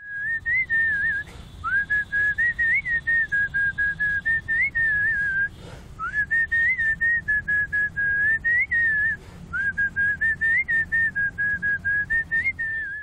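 A man whistling a tune through pursed lips: a clear high whistle in quick short notes that stay close to one pitch with small upward flicks, in several phrases separated by brief breaths.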